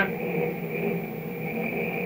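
A steady low hum with a faint high whine over it, unchanging throughout, heard through an old, noisy film soundtrack.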